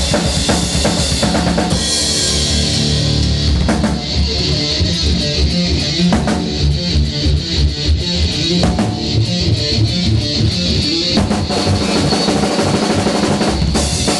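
Metal band rehearsing instrumentally with no vocals: a drum kit with dense bass-drum, snare and cymbal hits over sustained electric guitar and bass. The texture changes about four seconds in, and the cymbals come in strongly again near the end.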